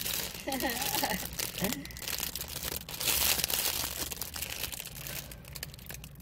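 Thin plastic salad-kit and crouton bags crinkling and rustling in the hands as croutons are shaken out of their bag onto the lettuce, with many small irregular crackles.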